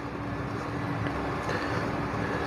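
Steady background noise with a faint low hum, and light pen scratching on paper as words are written by hand.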